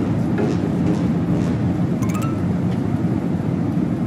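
Airliner cabin noise in flight: the steady, deep rush of the jet engines and the airflow.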